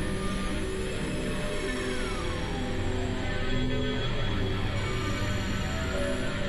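Dense experimental electronic music, several pieces playing over one another at once. Many sustained synth tones and drones overlap, with a slow falling pitch glide about two seconds in and a steady overall level.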